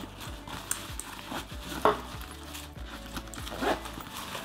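Soft rustling and handling of a backpack's nylon fabric as its side pocket is pulled open, with two brief louder sounds, one just before the middle and one near the end.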